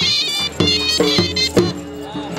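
Live Punjabi band music: a dhol drum struck about twice a second under a high, wavering melody line that fades out after about a second.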